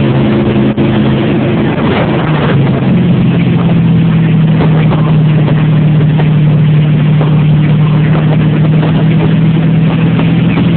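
An engine running steadily at a constant note, settling onto a slightly different, steady note about three seconds in.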